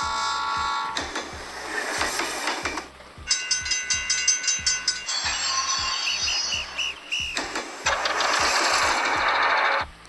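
Train sound effects from the LEGO Powered Up app played through a mobile device's speaker: a horn-like chord, a hiss, a ringing tone about three seconds in, five short chirps around six seconds, then another hiss that cuts off at the end.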